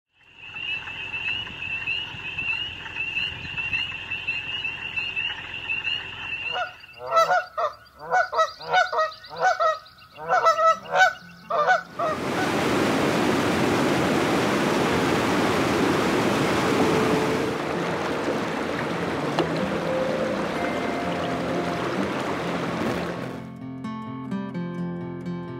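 A steady, high-pitched trilling chorus, then geese honking about ten times in quick succession, then the steady rush of water pouring over a small drop. Acoustic guitar music starts near the end.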